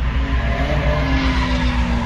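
Drift cars sliding in tandem on a track, their engines revving and tyres squealing, heard from inside a car at the edge of the course over a steady low rumble.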